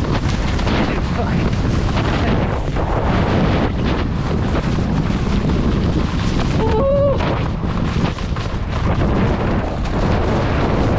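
Wind buffeting the microphone of a camera worn by a skier in motion, mixed with the skis scraping and chattering over chopped-up spring snow. A brief vocal sound comes through about seven seconds in.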